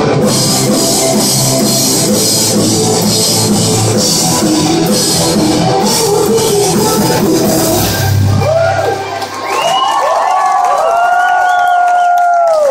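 Live rock band of electric guitar, bass, keyboards and drum kit playing loudly, then ending about eight and a half seconds in. The crowd follows with cheering and high shouts.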